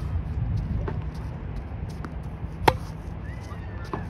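Tennis racquet striking the ball in a forehand rally: one sharp, loud hit about two and a half seconds in, with a fainter knock of the ball about a second in, over a steady low rumble.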